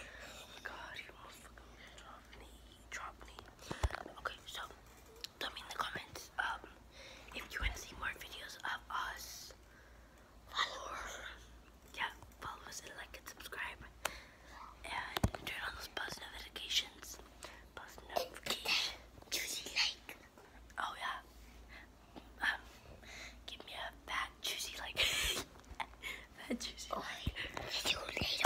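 Children whispering close to a phone's microphone in short, broken phrases.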